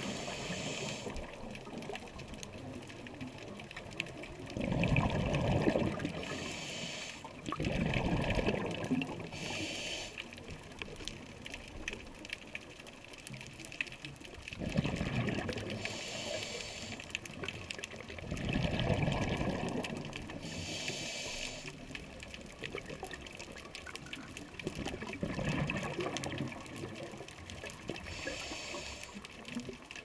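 Scuba diver breathing through a regulator underwater: a short hiss as each breath is drawn, then a longer gurgling rush of exhaled bubbles, repeating every few seconds.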